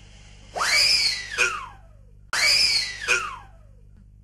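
A man screaming twice in pain, each long cry rising and then sliding down in pitch, as a patient strapped in a dentist's chair is worked on.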